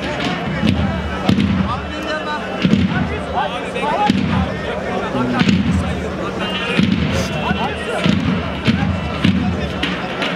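Davul and zurna music. Heavy bass-drum beats come about once a second, under a wavering high melody, with voices mixed in.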